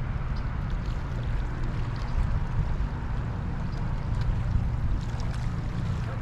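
Steady rush of river water around a wading angler, with a heavy low rumble of wind on the microphone.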